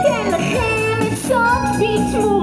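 A woman singing live, her voice gliding between held notes, over a band with keyboard and electric bass.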